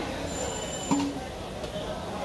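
Jilapi batter frying in a wok of hot oil, a steady sizzle under street noise of traffic and voices. There is a brief high squeal and then a sharp knock about a second in.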